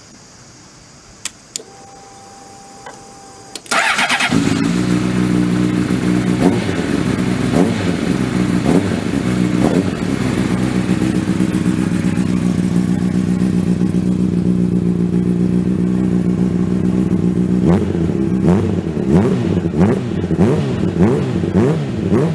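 2003 Honda CBR600RR HRC inline-four motorcycle engine through an Arrow exhaust. After a few faint clicks, the starter cranks briefly and the engine catches just under four seconds in, then idles steadily. From about eighteen seconds the throttle is blipped over and over, the revs rising and falling about once a second.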